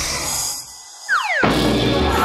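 Edited sound effects and music. A hissing noise fades out. About a second in, a quick falling whistle-like glide sounds as the girl collapses. Background music with a drum beat then starts.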